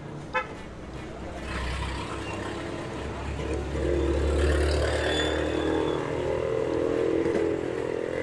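A motor vehicle driving past, its low engine drone building from about two seconds in, loudest around the middle and easing off near the end.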